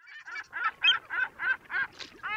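A quick, even series of about six short pitched animal calls, roughly three a second, as a sound effect.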